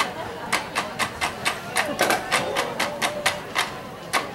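Marching band percussion playing a quick, even rhythm of sharp clicking strikes, about four to five a second, in a feature that uses metal trash cans as instruments.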